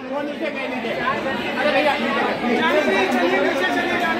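Crowd chatter: many young people's voices talking over one another at once in a large hall, no single voice standing out.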